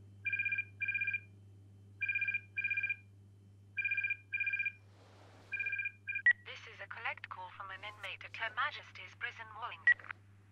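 Cordless home telephone ringing with a two-tone double ring, four double rings, the last one cut short about six seconds in as the call is answered.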